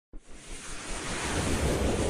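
Whoosh sound effect for an animated intro: a rush of noise with a low rumble that starts suddenly and swells steadily louder.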